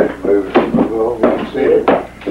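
Men's voices talking back and forth, with a short knock near the end.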